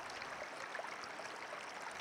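Faint, steady rush of flowing river water, a background ambience laid under the story.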